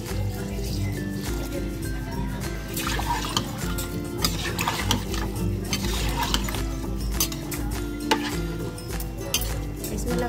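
Background music runs throughout, with water pouring into a steel pressure cooker early on. Later comes a metal slotted spoon stirring rice and gravy, clinking sharply against the pot several times.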